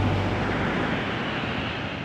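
Steady rushing noise of ocean surf and wind on the microphone, slowly getting quieter.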